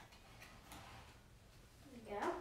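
Near silence: room tone with a low hum and two faint light ticks close together, about half a second in.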